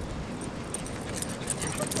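Greyhound galloping close past, its collar tags jingling in quick light clicks that build up from about a second in, over a low steady rumble.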